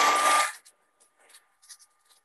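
Hair dryer run briefly to dry fresh paint: a steady rush of air with a motor whine that rises as it spins up, switched off about half a second in. Faint light clicks follow.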